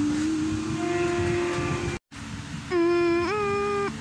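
Humming on held notes: one long low note that creeps slightly up in pitch and cuts off abruptly about halfway through. After a brief gap, a louder, buzzier held note starts and steps up in pitch near the end.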